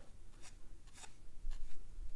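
Soft rubbing of a watercolor brush on paper, with a few faint light taps.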